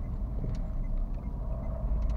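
Steady low rumble of a car's engine and tyres heard from inside the cabin while driving, with one faint tick about half a second in.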